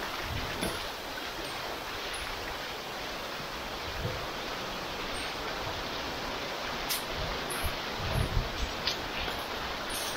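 Shallow river water running steadily over stones through a narrow rock canyon, with a few soft low thumps in the last few seconds.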